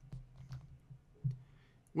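A few faint, scattered clicks and taps of a stylus writing on a drawing tablet.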